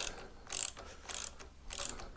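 Ratchet head of a torque wrench clicking in short bursts, four strokes about half a second apart, as a handlebar clamp bolt is worked loose.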